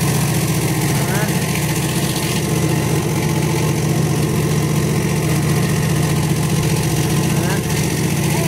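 Industrial banana-blossom slicer running steadily, its motor and stainless-steel blades giving a low hum with a fast, even pulse. It is set slow to cut thinner shreds.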